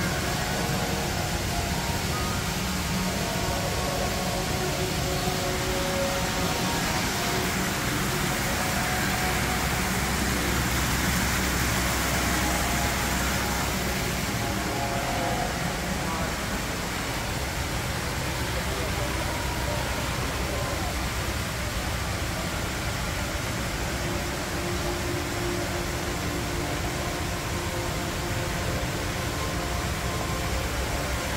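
Indistinct chatter of people in the background over a steady low hum and hiss.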